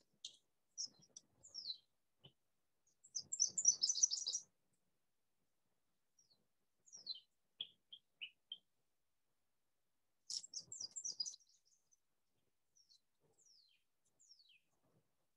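Songbirds singing: bursts of high, quick down-slurred chirps and rapid trills, with pauses between phrases.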